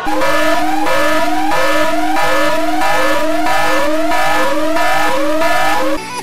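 A loud electronic siren-like tone that sweeps upward over and over, about one and a half rises a second, over a steadier, lower pulsing tone.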